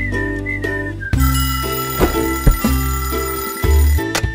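A short wavering cartoon whistle, then a cartoon alarm clock bell ringing steadily from about a second in until just before the end, over background music.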